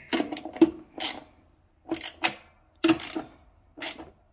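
Socket ratchet clicking in about five short bursts with pauses between them, as small nuts are run down onto the studs of an oil boiler's flue adaptor.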